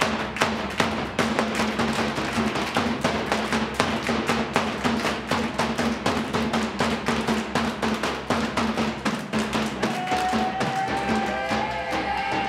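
A hand frame drum (dafli) beaten in a fast, steady rhythm with group hand-claps, about four to five beats a second. Near the end a voice starts a held sung note over the beat.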